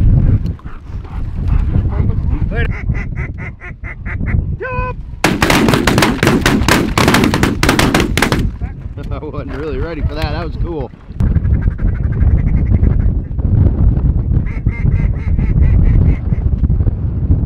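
Waterfowl calling: ducks and geese in a series of rapid repeated calls, with a dense fast run of calls in the middle and a wavering call after it, over wind rumbling on the microphone.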